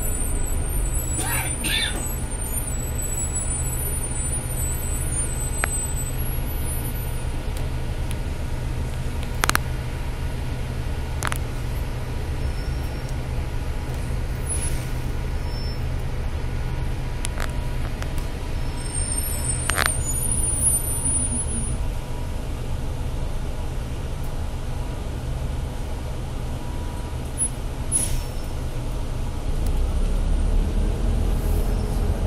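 Steady low rumble inside a moving city bus, with a faint high warbling whine near the start and again about two-thirds of the way in, and a few sharp clicks scattered through.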